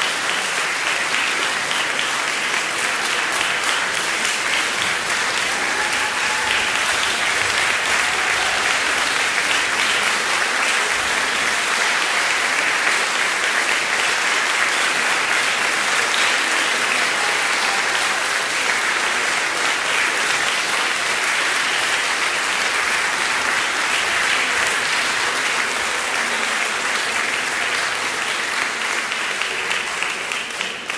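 Concert audience applauding steadily, dense clapping at an even level throughout.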